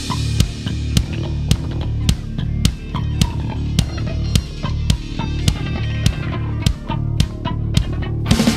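Progressive rock instrumental: a dense, sustained low guitar-and-bass riff with an acoustic drum kit played over it, its sharp drum and cymbal hits landing at irregular spacing rather than a steady beat.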